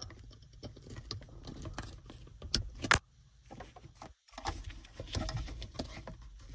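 Small plastic clicks and rattles as a wiring harness and its connectors are handled and plugged in behind a car's rearview mirror housing. Two sharper clicks come about two and a half and three seconds in.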